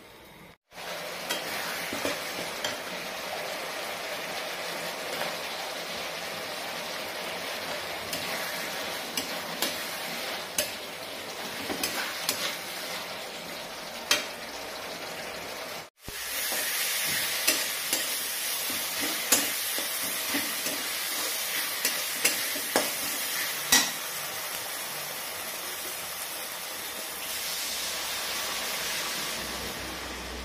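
Masala paste sizzling in hot oil in a metal kadhai while a metal spatula stirs and scrapes it, giving many short sharp clicks over a steady hiss. The sizzle is louder and brighter from about halfway.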